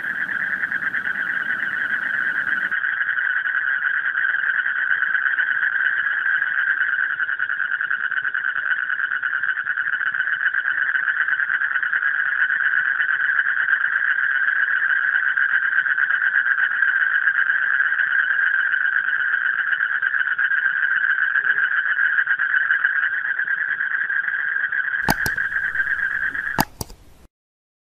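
A steady, unbroken high-pitched drone with a fine, fast trill to it, like a night-insect chorus. A few sharp mouse-like clicks come near the end.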